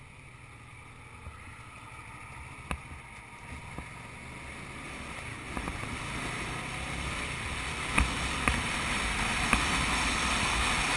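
Wind noise from riding a sport motorcycle, rising steadily as the bike picks up speed, with a few sharp knocks of buffeting near the end.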